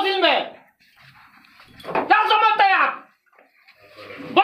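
Angry shouting by men in a heated argument. One shouted phrase ends about half a second in and another comes about two seconds in.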